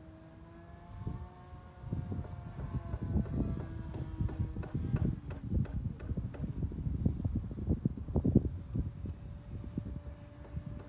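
A Phoenix Spitfire RC model plane's electric motor and propeller whine as it flies overhead, the pitch rising a little and then falling. From about a second in, heavy wind buffeting on the microphone sets in, gusting louder than the plane.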